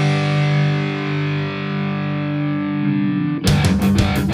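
Final bars of a heavy rock song: a distorted electric guitar chord is held and rings out, then the full band comes back in with sharp drum-backed hits about three and a half seconds in.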